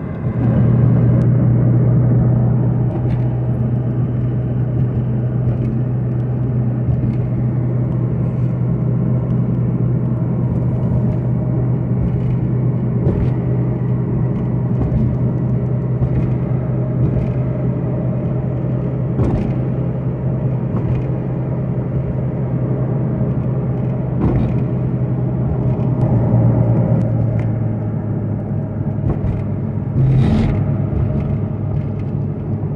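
A car driving, heard from inside: a steady low engine and road drone, with a few faint ticks now and then.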